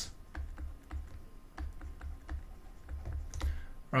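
A stylus writing on a graphics tablet: faint, irregular light taps and clicks, with dull low bumps underneath.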